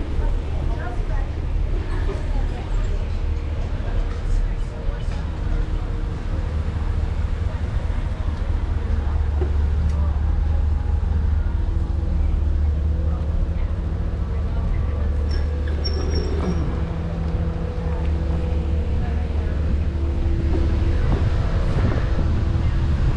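Busy street ambience heard from a slowly moving bicycle: a low wind rumble on the action-camera microphone, indistinct voices of passers-by, and a steady vehicle engine hum that becomes clearer in the second half. A brief high squeak comes about three-quarters of the way through.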